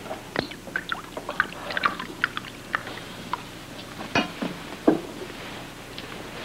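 Champagne poured from a bottle into a glass, with a run of small ticks and splashes. Two louder knocks come about four and five seconds in.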